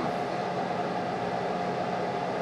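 Steady electrical hum and hiss from an idle amplified rig, with electric guitar and microphone live but nothing being played.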